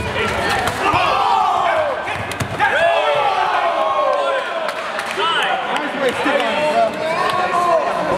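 Several people shouting over one another, coaches and onlookers calling out around a sparring mat, with a few sharp thumps of impacts in the first few seconds.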